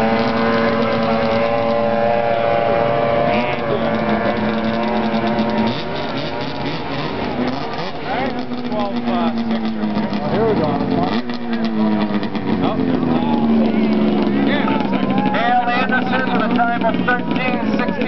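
Snowmobile engine running hard at high revs, holding a steady pitch for the first few seconds. Later its pitch slides slowly downward over several seconds. Voices come in near the end.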